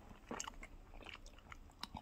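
Faint chewing with a few soft mouth clicks.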